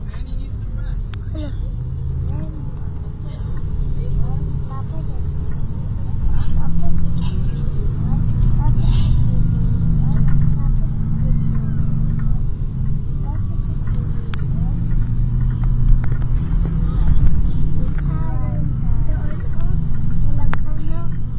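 Low, steady rumble of road and engine noise inside a moving road vehicle, growing louder about six seconds in, with faint voices talking underneath.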